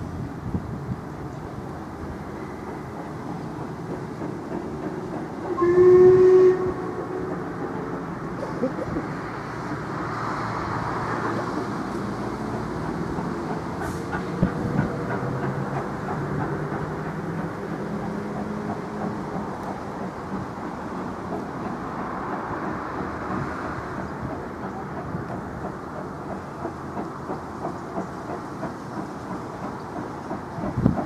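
Steam locomotive working slowly past. About six seconds in it gives one short whistle, the loudest sound, and after that a steady run of rhythmic exhaust beats and running noise continues.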